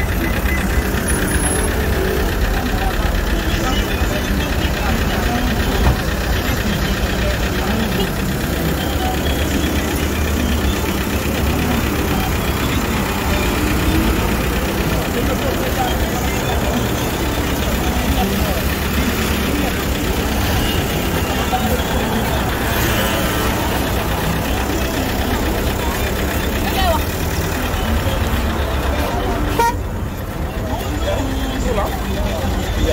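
Steady noise of busy road traffic: car and bus engines running close by, with voices mixed in.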